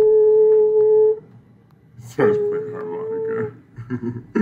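A person sounding a slow tune of two long held notes, each about a second or more, with a short gap between; the second note slides up into its pitch.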